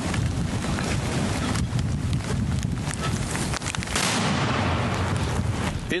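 A small-calibre mortar firing a single round amid steady, rough wind noise on the microphone.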